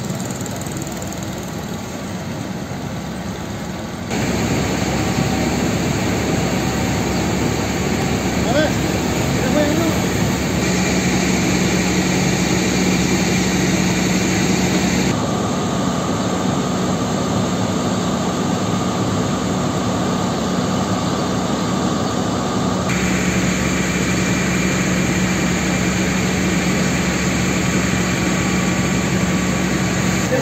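Fire engine running steadily at the scene, a low engine hum with a higher steady whine over it. The sound jumps louder about four seconds in and changes abruptly a few more times.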